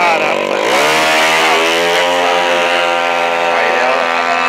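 Drag-racing motorcycle engine jumps to full, screaming revs about a second in and holds there steadily as the bike leaves the start line.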